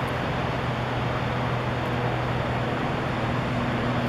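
Steady roar of Snoqualmie Falls, an even rushing noise with a low steady hum beneath it.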